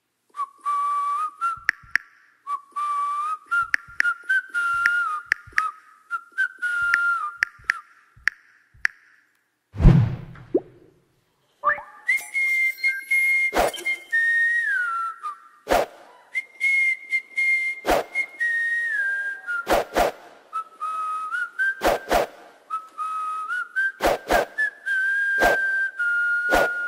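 A tune whistled note by note, punctuated by sharp percussive knocks. About ten seconds in there is one deep boom and a brief pause, then the whistled melody resumes higher, with louder, more frequent knocks.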